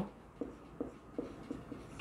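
Marker pen writing on a whiteboard: about five short, faint strokes as figures and letters are written.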